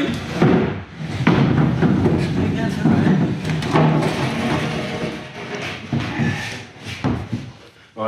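A fibreglass companionway moulding being lifted out of its opening, scraping and bumping against the plywood, with several sharp knocks.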